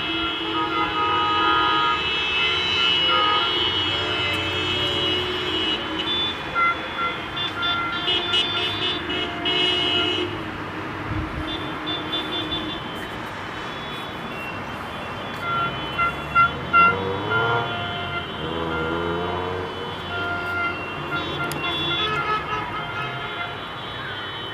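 Many car horns honking across town in a football victory motorcade, long held and short toots overlapping without a break, with a few short sharp honks about two-thirds of the way through.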